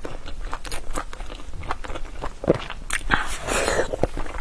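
Close-miked eating: chewing and biting with a quick string of wet mouth clicks and crunches. About three seconds in there is a short burst of rustling.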